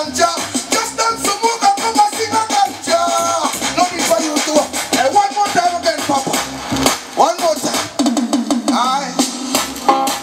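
A man singing into a microphone over a backing track, amplified through a PA. Under the voice runs a regular bass beat.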